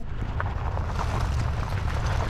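Boat under way on the water: a steady low motor rumble mixed with wind and water noise.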